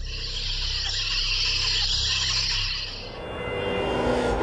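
Sound effect for an animated logo sting: a steady hiss over a low rumble for about three seconds, fading out, with the first pitched notes of the sting coming in at the very end.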